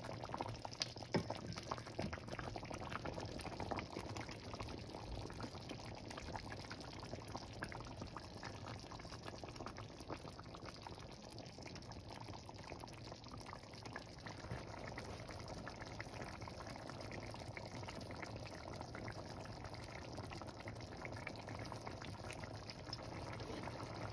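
Thick tomato sauce with meatballs simmering in a steel pot, bubbling with a steady run of small pops. The popping is denser in the first few seconds.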